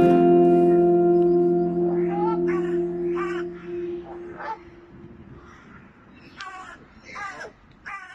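Crows cawing: about seven harsh, downward-sliding caws, spaced out and coming in small groups. Under the first caws a held chord of background music fades away over the first few seconds.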